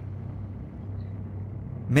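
A low, steady hum with a faint hiss over it.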